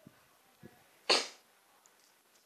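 A single loud sneeze about a second in, after two faint short sounds.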